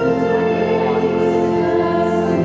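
Church organ playing held chords under voices singing a hymn.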